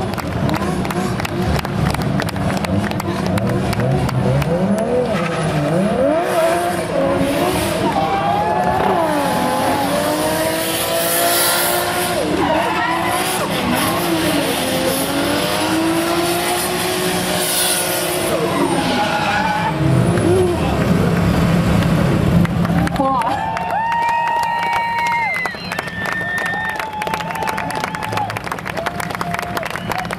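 Drift cars' engines revving hard, pitch sweeping up and down over and over, under a rough hiss of spinning tyres during smoky donuts. In the last third the revving falls back and long tyre squeals ring out, held and jumping from one pitch to another.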